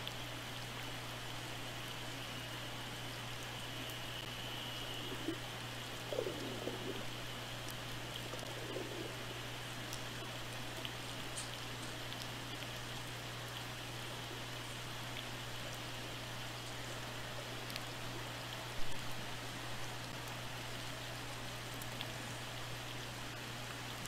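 Underwater ambient from a hydrophone: a steady hiss over a low hum, with scattered faint clicks and crackles. There are faint wavering sounds around 6 and 9 seconds in and a single thump about 19 seconds in.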